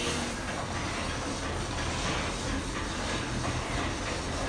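Steady hissing, rumbling ambience with a low hum underneath, from the store's spooky background soundscape.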